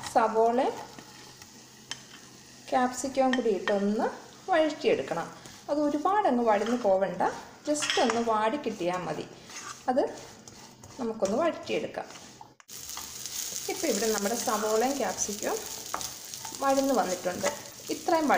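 Chopped onions and capsicum sizzling in hot oil in a nonstick kadai, stirred and scraped with a plastic spatula. The frying hiss is louder from about two-thirds of the way through. Over it, a wavering pitched sound that rises and falls recurs in roughly one-second stretches.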